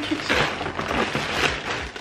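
Plastic packaging rustling and crinkling as a hand rummages through a parcel and pulls out an item.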